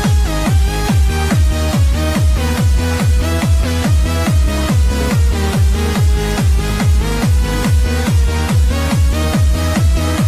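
Hands-up techno dance track: a four-on-the-floor kick drum at about two beats a second under a bright synth melody that steps up and down in pitch.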